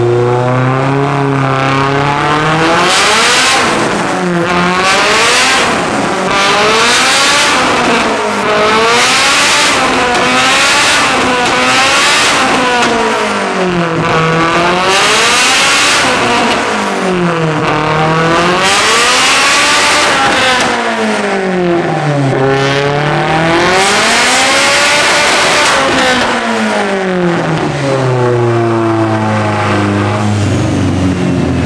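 Turbocharged Honda K24 four-cylinder engine in a Nissan Silvia S15 running hard on a chassis dyno, its revs rising and falling over and over every couple of seconds. Loud rushing noise comes in at the top of many of the rises.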